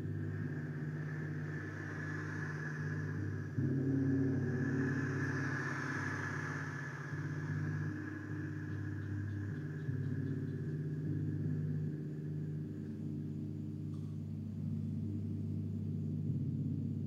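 Large gongs sounding a sustained, rumbling low wash whose layered tones shift as it goes, swelling about three and a half seconds in, with a steady high ringing tone above it that fades out near the end.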